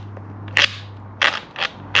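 Ryobi angle grinder's spindle turned by hand, giving a handful of short, gritty crunching clicks: its bearings have failed.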